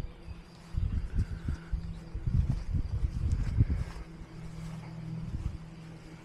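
Low, irregular rumbling and thumps of wind buffeting and handling noise on a handheld camera microphone while walking, over a steady low hum.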